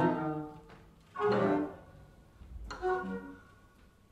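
Improvising orchestra of strings and other instruments: a held many-note chord fades out within the first half second, then two short ensemble chords sound about a second and a half apart, each dying away into quiet.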